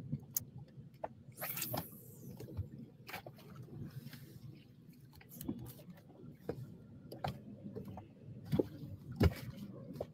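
Rod being cast from a fishing boat: a brief hiss about a second and a half in as the line goes out, with scattered light knocks and clicks of handling over a faint low rumble, and one sharper knock near the end.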